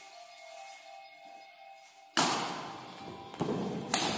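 Badminton rally on a wooden court: a sudden loud thud about halfway through that rings on in the hall, more footfall noise, and a sharp crack of a racket striking the shuttlecock just before the end, over faint steady background music.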